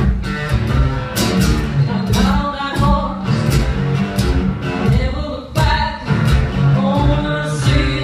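Live band music: a woman singing over strummed guitars, with sharp percussive hits.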